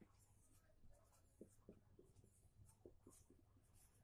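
Faint strokes of a marker pen writing on a whiteboard, a string of short separate strokes.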